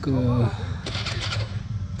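A man's voice drawing out one short word, then a pause over a steady low hum, with a few faint short high sounds about a second in.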